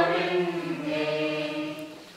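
Voices chanting a liturgical hymn together, holding long sustained notes that fade away near the end.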